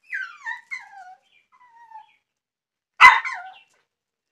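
A puppy whimpering in a few short cries that fall in pitch, then one loud, sharp yip about three seconds in.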